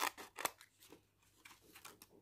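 Scissors snipping a sheet of leaf gelatin: a sharp snip right at the start and another about half a second in, then a few faint clicks.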